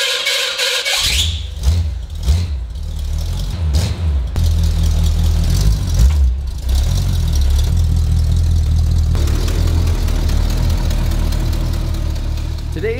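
An old American car's engine starting: a brief whine in the first second, then the engine catches and runs with a deep, steady rumble and small surges in revs as the car rolls backwards out of the garage.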